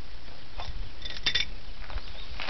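A few light metallic clicks and clinks as the valve and fittings on a small high-pressure hydrogen cylinder are handled and opened by hand, with a short cluster of clinks a little after one second in.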